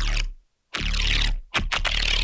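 Synthesized neuro bassline loop playing back as loud hits with a short gap between them, through a narrow EQ bell boost of about +15 to +23 dB near 3 kHz that exaggerates the shrill high end around 2.9 kHz.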